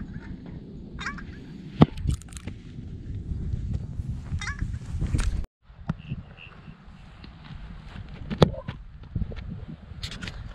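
Two sharp thuds of a football being kicked, the first about two seconds in and the louder, the second about six and a half seconds later. Steady wind rumble on the microphone underneath.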